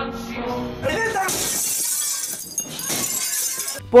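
Glass shattering and breaking up: a crash about a second in, followed by more than two seconds of dense, high-pitched crashing glass, with festive music underneath.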